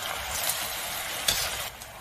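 Hot braised beef brisket and its sauce sizzling as they are ladled into a clay pot of white radish, a steady hiss with a brief scrape of the utensil a little past a second in. The hiss eases near the end.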